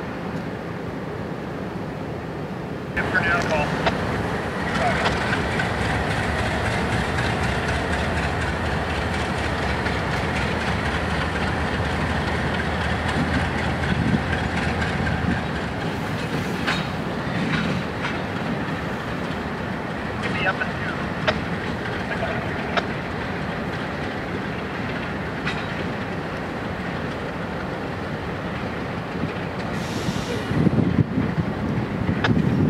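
Diesel locomotives moving slowly past, their engines rumbling steadily and growing louder about three seconds in. Brief high squeals come near the start, and sharp clicks are scattered through the second half.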